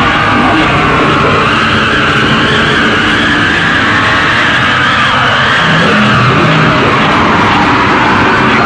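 Loud, continuous harsh-noise recording: a dense wall of distorted noise with wavering, sliding whines that rise and fall slowly, and no beat or separate hits.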